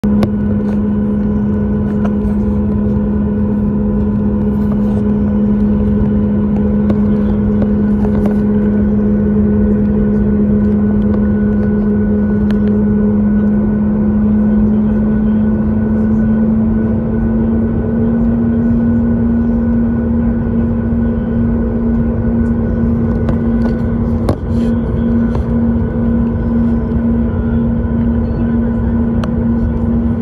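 Cabin noise of a Boeing 737 MAX 8 taxiing, heard from a window seat over the wing: the CFM LEAP-1B engines at idle and the cabin air give a steady loud hum with a strong low tone. The tone rises slightly about halfway through.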